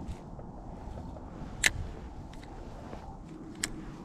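Steady low wind and river noise on the microphone, broken by two sharp clicks about two seconds apart.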